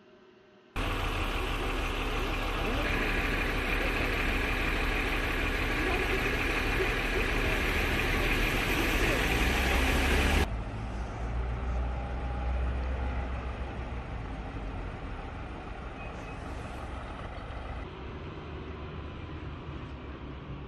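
Outdoor street ambience recorded on a camera microphone: a steady noise with a strong low rumble, heard as vehicle sound, and some voices in the background. It starts abruptly just under a second in, is loud for about ten seconds, then drops suddenly to a quieter level that eases again near the end.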